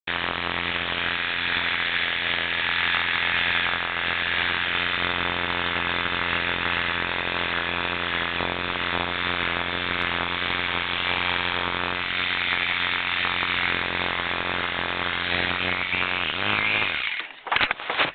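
Electric animal clippers with freshly resharpened blades running steadily with a buzzing motor hum while clipping a dog's fur. Near the end the motor is switched off and winds down, dropping in pitch, followed by a few rustles and clicks.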